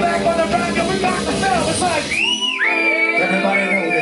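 Live band playing with vocals; about halfway through, the drums and bass drop out and a single high note is held over sustained chords.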